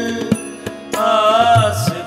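Sikh shabad kirtan: harmonium chords held under tabla strokes, and a male voice singing one long wavering note about a second in.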